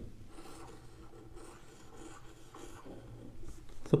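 Marker pen rubbing faintly on a whiteboard as a diagram is drawn.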